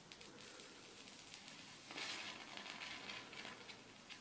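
Wet match heads fizzing and crackling faintly as a drop of sulfuric acid reacts with the chlorate in them. About two seconds in the fizz swells into a brief hiss with a run of small crackles as the heads flare up.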